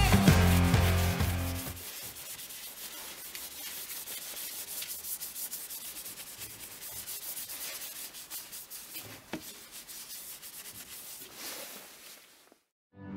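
Music ends about two seconds in; then a hand rubs briskly over a wooden chef-knife handle, a dry scratchy rubbing in quick, uneven strokes that fades out near the end.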